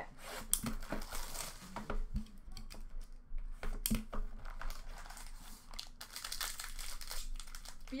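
Plastic shrink-wrap being torn and crinkled off a sealed hockey card box: a string of irregular crackles and short rips.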